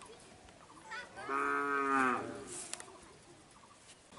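A single long animal call of steady pitch, starting about a second in and lasting just over a second.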